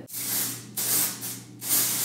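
Aerosol root touch-up spray hissing out of the can in three short bursts onto the hair at the parting, to cover grey roots.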